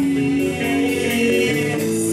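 Rock band playing live: a lead line of held notes over bass guitar and drums.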